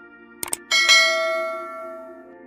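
Two quick clicks, then a bright bell chime that rings out and slowly fades: the click-and-bell sound effect of a subscribe-button animation. It plays over a steady ambient music drone.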